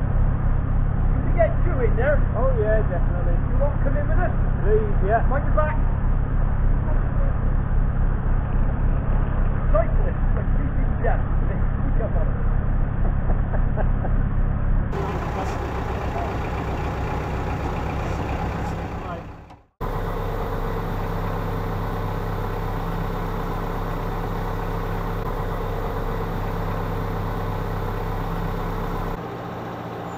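Narrowboat's diesel engine running at a steady low throttle, with faint distant voices in the first few seconds. The sound changes at a cut about halfway through and drops out for an instant a few seconds later, then the engine carries on running evenly.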